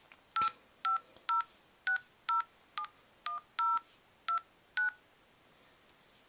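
Touch-tone keypad beeps from an iPod Touch dialler app as a phone number is keyed in. There are ten short two-tone beeps at about two a second, and they stop about five seconds in.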